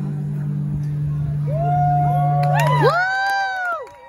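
A last acoustic guitar chord rings and fades out, while from about a second and a half in, audience members whoop and cheer in rising-and-falling calls that overlap.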